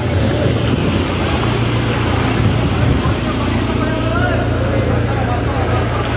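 Steady rumble of a light truck driving through deep floodwater, with water swishing and splashing around it.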